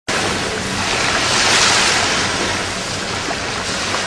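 Sea waves washing, a steady rush of water that swells about a second and a half in and then slowly eases.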